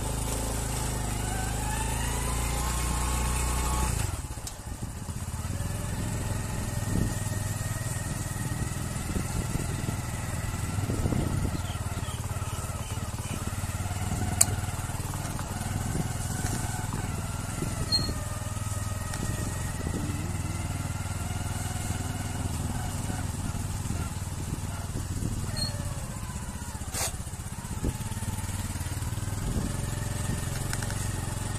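Small motorcycle engine running as it is ridden, its pitch rising over the first few seconds as it picks up speed, then running steadily with the revs wavering a little.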